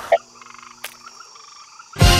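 Swamp ambience with a frog croaking in a quick run of rattling pulses and a single sharp click a little under a second in.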